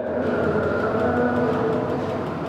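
A steady vehicle-like rumble with a faint constant hum running through it, holding an even level.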